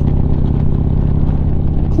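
Harley-Davidson Street Glide's V-twin engine running steadily at cruising speed, with wind and road noise around it.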